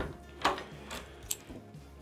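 A key turning in a door's cylinder lock: a couple of short, light metallic clicks, about half a second and just over a second in, as the lock is worked open.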